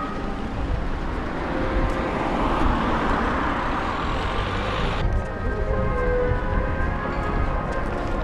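A road vehicle driving past on the street, its noise building for a few seconds and cutting off abruptly about five seconds in, with faint music underneath.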